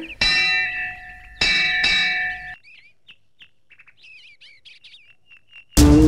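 Temple bell struck twice, about a second apart, each strike ringing on with several steady tones. Faint bird chirps follow, and music comes in loudly near the end.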